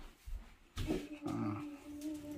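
A dog whining: a short sound about three-quarters of a second in, then a steady, level whine lasting about a second and a half.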